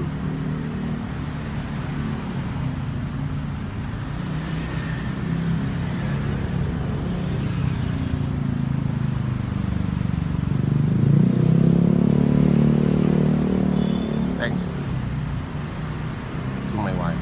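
Street traffic with a vehicle engine running close by. It grows louder about ten seconds in, stays loud for a few seconds, then eases off.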